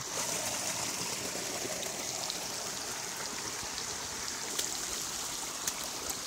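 A small, low-running stream splashing steadily over rocks into a shallow pool, heard close to the water.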